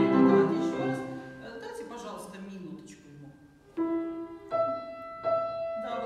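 A boy's voice singing a classical phrase over grand piano accompaniment, the voice fading out in the first second or two. The piano then goes on alone, with three chords struck about two-thirds of a second apart in the second half.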